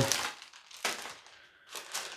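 Clear plastic zip-lock bag of game pieces crinkling as it is handled and opened, with a few short rustles.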